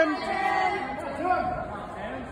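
Indistinct voices of people talking in the background of a large gym hall.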